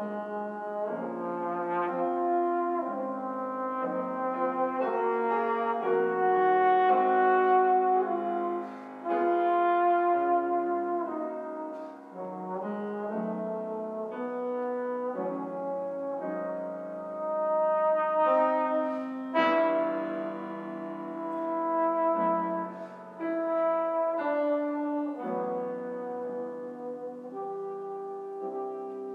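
A brass instrument playing a sustained, legato classical melody with piano accompaniment in a reverberant recital hall, the line rising and falling in loudness across phrases.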